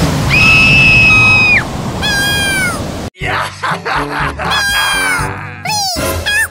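A high-pitched cartoon wailing cry held for about a second, then a shorter falling cry, over the noise of stormy surf. Just after three seconds the sound cuts abruptly to background music with squeaky, meow-like gliding voice effects.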